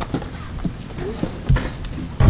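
A few hollow knocks and thumps from people moving about at the stage table, with faint talk in the room; the loudest is a low thump about a second and a half in.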